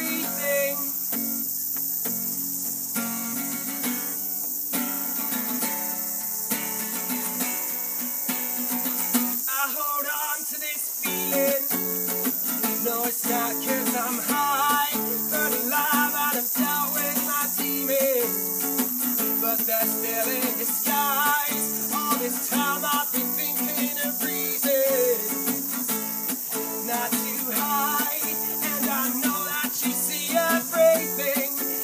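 Acoustic guitar strummed and picked in an instrumental passage, over the steady high-pitched drone of cicadas.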